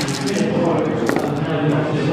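A handful of six-sided dice thrown onto the gaming table for a shooting roll, clattering as they land, over steady voices in the room.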